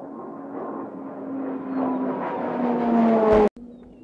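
Embraer A-29 Super Tucano's PT6A turboprop passing close by. The engine and propeller drone swells, and its pitch drops as the aircraft goes past. It cuts off suddenly near the end, and a fainter, steady drone of the aircraft farther off follows.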